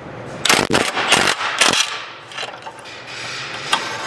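Milwaukee cordless impact wrench hammering on a catalytic converter flange bolt through a long extension, in two short bursts about half a second and a second in.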